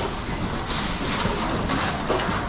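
Wire shopping cart rolling over a concrete floor: a steady rumble from the caster wheels, with the metal basket rattling.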